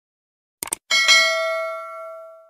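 A short click, then a bell-like ding struck about a second in that rings on and fades: the notification-bell sound effect of an animated YouTube subscribe button.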